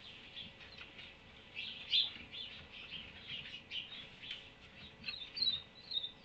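Many short, high-pitched chirps and squeaks from a small animal, with a quick run of chirps near the end. A faint steady hum sits underneath.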